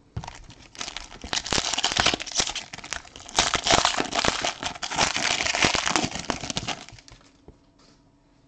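Foil wrapper of a trading-card pack being torn open and crinkled by hand: a dense crackling with many sharp clicks that starts about a second in, pauses briefly just past three seconds and dies away about seven seconds in.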